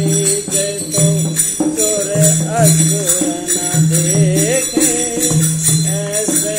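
Shiv bhajan music: a wavering melody line over a low bass note that comes and goes every half second or so, with jingling percussion.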